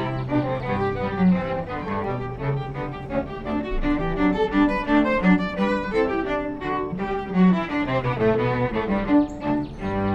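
String quartet of two violins, viola and cello playing live, the notes moving briskly several times a second.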